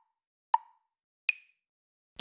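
Two short, hollow plopping pops about three-quarters of a second apart, the second higher-pitched, with silence between them: sound-effect pops.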